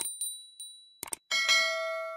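Subscribe-animation sound effects: a small bell's ringing dies away, two quick clicks come about a second in, then a bright bell chime with several tones rings out and slowly fades.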